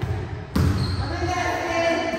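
Volleyballs being struck and bouncing on an indoor court, echoing around the gym hall, with one sharp hit about half a second in and a voice calling out over it.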